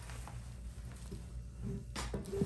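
Faint handling sounds as the fabric-and-frame bassinet top is lowered onto its metal stand, a few light knocks and rustles over a low steady hum.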